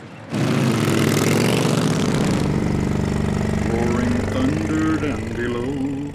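A motorcycle engine starts with a sudden loud burst about a third of a second in and keeps running with a steady low rumble. A song with a singing voice comes in over the engine in the second half.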